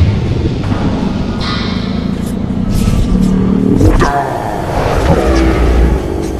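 Subway train running with a heavy rumble, mixed with a dramatic music score. About four seconds in a rising sweep in pitch ends in a sudden hit, followed by a falling tone.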